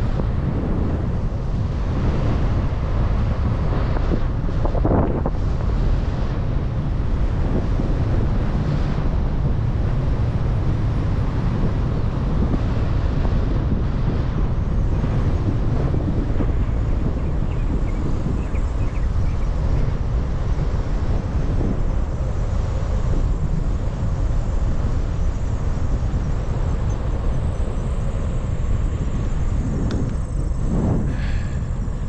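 Steady wind noise buffeting the microphone of a camera on a moving bicycle.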